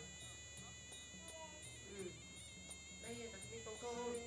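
Faint traditional Kun Khmer ring music: a nasal reed pipe (sralai) playing held notes and short melodic turns over a drum pattern, with small cymbals ticking about three times a second.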